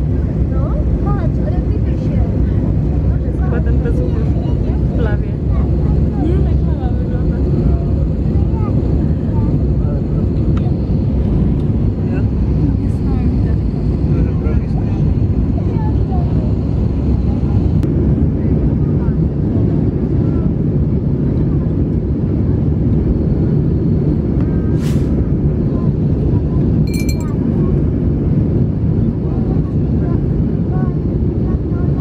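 Steady, loud cabin noise of a jet airliner in flight, a deep even rumble of engines and airflow heard from a window seat. Near the end a single short high chime sounds, the cabin seat-belt sign chime ahead of a turbulence announcement.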